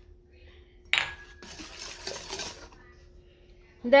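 A single metal clink against a stainless steel mixing bowl about a second in, ringing briefly, followed by about a second and a half of soft scraping as a wire whisk stirs salt into beaten eggs and sugar.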